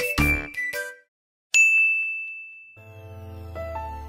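A single bright bell-like ding, an edited-in chime effect, strikes suddenly about a second and a half in and rings out, fading over about a second. Soft background music comes in under it near the end.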